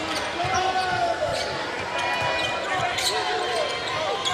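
A basketball being dribbled on a hardwood arena court, with short squeaks of sneakers as players cut.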